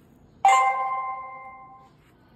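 Tuya ITY-AK502 alarm control panel sounding a single bell-like electronic chime about half a second in, fading out over about a second and a half: the confirmation tone for a setting saved on its touchscreen keypad.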